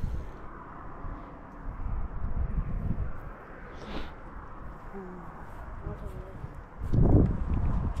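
Wind rumbling on the microphone, with faint, muffled voices and a louder gust-like burst near the end.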